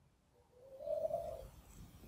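A faint bird call: one low, steady note about a second long, rising slightly in pitch.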